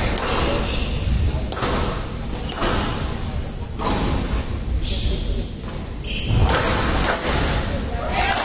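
Squash rally: the ball is struck and hits the court walls in sharp thuds about once a second, over a murmur of crowd voices.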